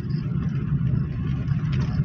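Car engine and road noise heard from inside the cabin while driving, a steady low drone.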